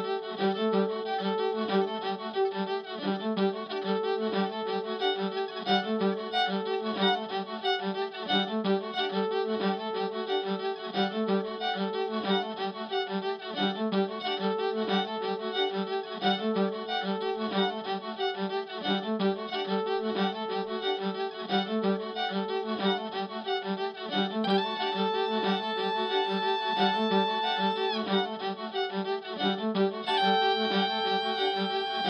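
Fiddle played through effects pedals and amplifiers: bowed notes layered over a steady pulsing figure, with a long high held note coming in about 25 seconds in and stopping about three seconds later.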